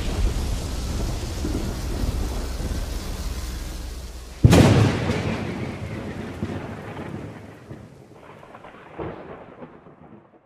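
Thunderstorm sound effect: a steady rain-like hiss over low rumble slowly fades. About four and a half seconds in, a sudden loud thunderclap rolls away over several seconds, and a smaller rumble follows near the end.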